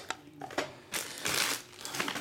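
Paper rustling and scraping as kraft envelopes are handled on a tabletop: two short noisy bursts about a second in, with a few small clicks.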